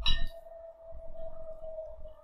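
A glass beer bottle set down on a wooden bench: a sharp knock and clink right at the start. A steady high-pitched hum runs underneath.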